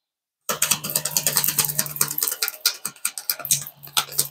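A tarot deck being shuffled by hand: a fast, dense run of card clicks that starts about half a second in.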